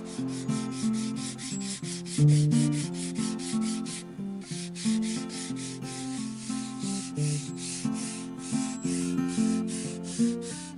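A small metal hand file rasping across the wooden grip of a carved walking stick in quick, even strokes, about four a second, with a brief pause about four seconds in. Acoustic plucked-string music plays underneath.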